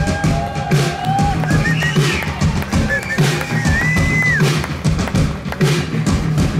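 Live rock band playing without vocals: a steady drum beat and bass, with long bending electric-guitar notes above.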